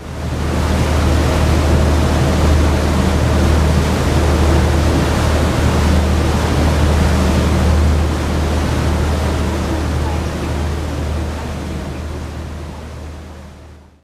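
Tour boat's engine droning low under the loud, steady rush of its churning wake water, fading out at the end.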